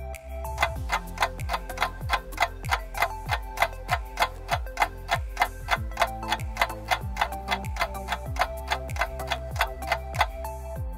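Ticking clock counting down the answer time, starting about half a second in and going steadily at about three ticks a second over a soft music bed.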